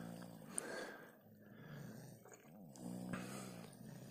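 Faint snoring of men asleep, a few drawn-out snores, one rising and falling in pitch midway.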